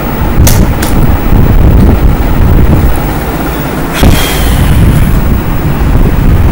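Loud, steady low rumble of wind-like noise on a phone's microphone while the phone is handled and moved. Two small knocks come close together about half a second in, and a louder knock about four seconds in.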